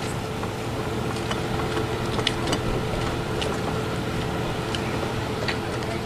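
Steady engine-like drone with a low hum and two constant tones, mixed with outdoor noise, and a few short sharp clicks now and then.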